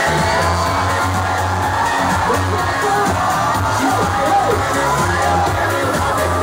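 Loud dance music playing over a nightclub sound system, with a heavy steady bass, and a crowd cheering and whooping over it.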